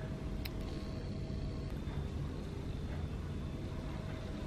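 Steady low background rumble, with one faint click about half a second in.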